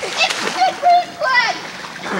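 Children's high-pitched shouts and calls in a swimming pool, with water splashing around them.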